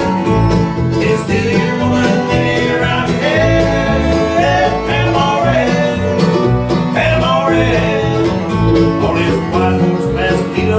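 A bluegrass band plays an instrumental passage without vocals on fiddle, mandolin, acoustic guitar and upright bass, with a pulsing bass line under the melody.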